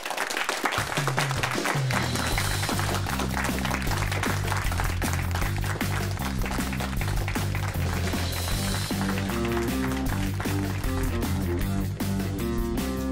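Closing theme music with a steady, repeating bass line over the end credits, with clapping and a laugh in the first few seconds.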